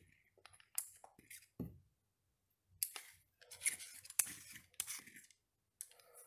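Faint handling sounds of a steel digital caliper and a small 3D-printed plastic test cube: a few light clicks, then a cluster of short metallic scrapes and taps about three to five seconds in as the caliper jaws are slid off the cube.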